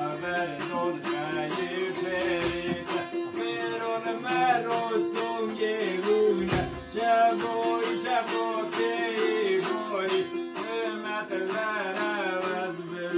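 Three bağlamas (long-necked Turkish saz lutes) played together in a deyiş, quick plucked notes over a steady ringing drone.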